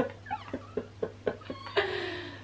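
Women laughing: a run of short breathy laughs, then a high, squeaky, wheezing laugh near the end.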